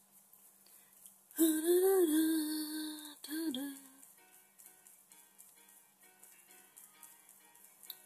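A woman humming: one long held note with a slight rise and fall, then a shorter note, followed by faint light ticks.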